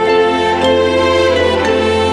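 Slow instrumental Christmas music: sustained melodic notes over a held low bass note, with gentle note changes.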